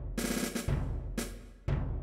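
Notation-software playback of a percussion intro: a low drum stroke alternating with a brighter, higher hit, about two strokes a second in a steady beat.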